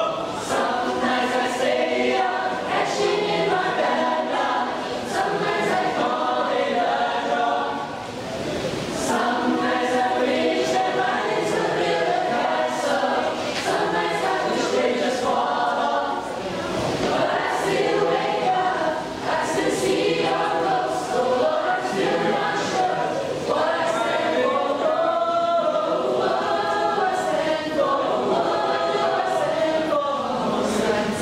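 A choir singing in several parts, its phrases separated by brief pauses.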